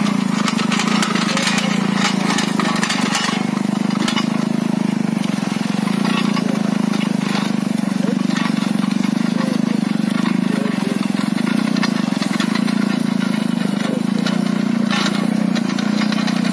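Motorcycle engine running steadily under load, driving a rear-mounted rotary tiller, with irregular clatter from its iron tines and levelling blades working the soil.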